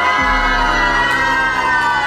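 A group of women screaming with excitement, several high voices rising together and then held, over background music.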